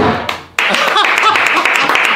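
A small group clapping and laughing with excited exclamations: a sharp burst of reaction right at the start, then dense clapping that begins suddenly about half a second in and carries on.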